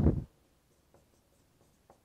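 Dry-erase marker writing on a whiteboard, heard as a few faint taps and strokes, opening with a brief loud low thump.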